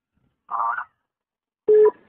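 A pause in a telephone conversation, heard over a narrow phone line: silence, then a short vocal murmur about half a second in, and a voice starting to speak near the end.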